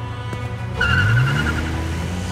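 Car pulling away fast, as a cartoon sound effect: the engine revs up with a brief tire squeal about a second in, over background music.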